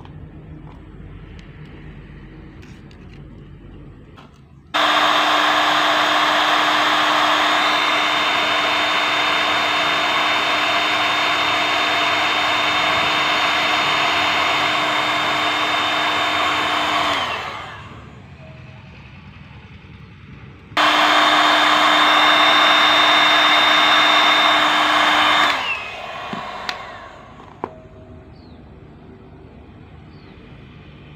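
Electric heat gun running twice, a steady blowing with a fan whine, first for about twelve seconds, then about five. Each run ends with the whine falling in pitch as it is switched off and the fan winds down.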